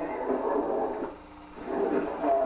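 Muffled, indistinct voices talking, with a short pause a little after a second in.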